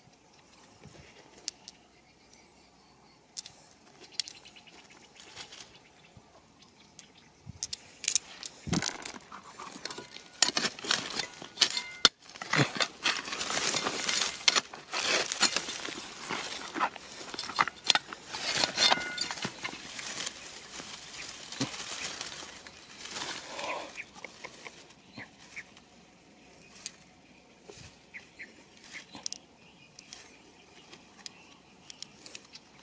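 Loose shale and dirt being dug through and scraped, a dense run of crunching and small stone clicks from about eight seconds in until about twenty-four seconds in, with only scattered single clicks of stones before and after.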